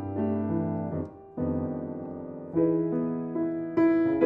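Grand piano playing solo jazz in slow, sustained chords, with a short break about a second in before the next chord rings out.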